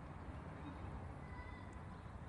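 Low steady outdoor background rumble, with a faint, brief, thin-pitched animal call from a distance about a second and a half in.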